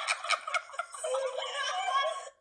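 A woman laughing hard and high, in quick bursts at first and then in longer drawn-out whoops, sounding thin and tinny as if replayed through a small speaker.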